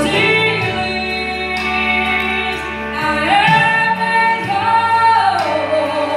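A woman singing a slow gospel song into a microphone, holding long notes with vibrato, over a steady instrumental accompaniment. Her line climbs about three seconds in and falls again near the end.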